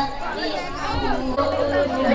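Indistinct chatter: several people talking at once, with no single voice clear.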